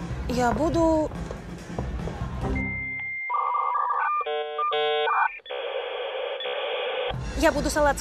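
Dial-up modem handshake sound effect: a steady high answer tone, then a run of chirping, switching tones, then a rushing hiss of line noise, about four and a half seconds in all. It cuts in over club music and a voice about two and a half seconds in, and the club sound returns just before the end.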